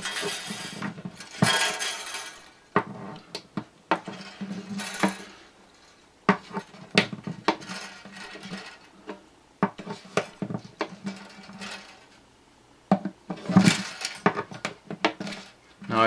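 Bridge pins being pried out of an acoustic guitar's bridge with a string tool and the old strings pulled out through the bridge holes: irregular small clicks and clinks, with short scraping rustles as the strings are drawn out.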